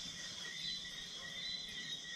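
Steady dusk chorus of crickets and other insects in tropical forest: several high trills layered together.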